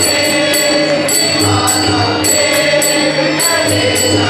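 A group of men singing a devotional chant together, with harmonium and tabla accompaniment. A regular ringing metallic beat comes about every half second.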